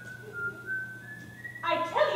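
Whistling: a short run of single held notes, stepping slightly down then up in pitch. A high-pitched voice comes in near the end.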